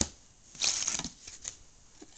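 Plastic Blu-ray cases being handled on a wooden table: a short rustling, scraping burst about half a second in, followed by a few light clicks.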